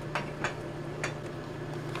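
A few faint, short clicks, presses on the plastic buttons of a Kill A Watt EZ power meter as it is stepped to its power-factor display, over a steady low hum.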